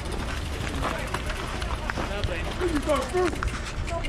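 Several people talking in the background, with a steady low rumble of wind on the microphone and a few short clicks.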